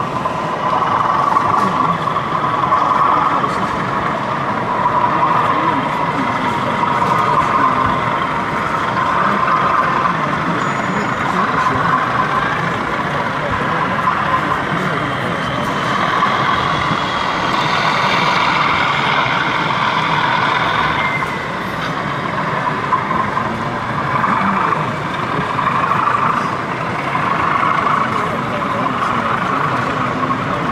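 Steady diesel engine sound from a sound-fitted OO gauge model Class 37 locomotive, heard over the chatter of a crowd in an exhibition hall.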